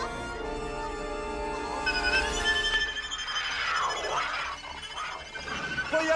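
Cartoon film score music with held notes, joined about three seconds in by a crashing, shattering sound effect.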